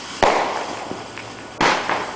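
Aerial fireworks: two sharp bangs about a second and a half apart, each fading out over a fraction of a second.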